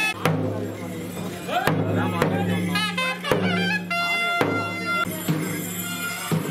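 Mangala vadyam temple music: a nadaswaram playing a bending, gliding melody over a steady low drone, with a held note about four seconds in and occasional sharp thavil drum strokes.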